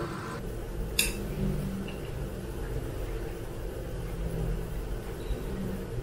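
A metal utensil clinks once, sharply, against a ceramic bowl about a second in, over a steady low hum.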